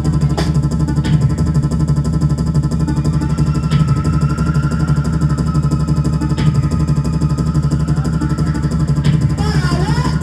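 Live electro-punk band playing loud: a fast, even electronic beat with heavy bass under synth keyboard and electric guitar, with a long high note held from about three seconds in until near the end. Near the end a voice comes in on the microphone.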